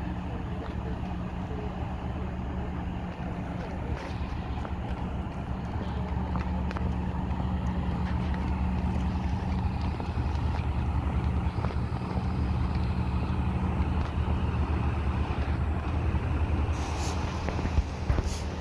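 A fire engine's diesel engine idling steadily, its low hum growing slowly louder, with voices in the background.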